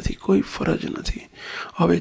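Speech only: a man talking into a microphone in a steady discourse, with a brief pause about halfway through.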